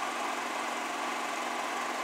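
Steady mechanical hum of a motor running in the background, even throughout with no starts or stops.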